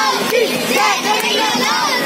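A crowd of children and adults shouting and cheering together, many voices overlapping loudly and without a break.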